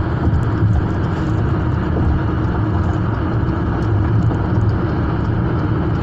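Steady low rumble of a car driving at highway speed, heard from inside the cabin: tyre and road noise with the engine running underneath, even throughout.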